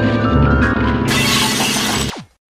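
Loud piano music with heavy, sustained low chords. About a second in, a loud burst of hissing noise joins it as a sound effect and runs to the end, as the on-screen piano keyboard cracks and the picture shuts off.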